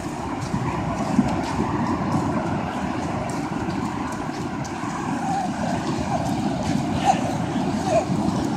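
Steady rush of ocean surf breaking, mixed with wind on the microphone.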